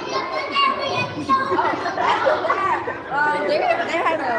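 Several children's voices chattering and talking over one another.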